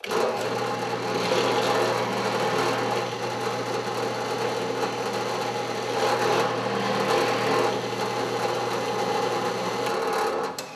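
Benchtop drill press running steadily with a countersink bit cutting into plywood, a motor hum under the noise of the cut, louder about a second in and again about six seconds in as the bit bites into each of the two holes.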